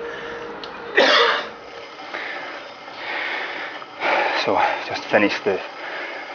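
A man panting and gasping for breath, exhausted after a maximal effort on an exercise bike, with one loud gasp about a second in. He starts to speak, still out of breath, near the end.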